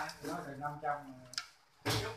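People talking in short murmured replies, with a single light click about two-thirds of the way through.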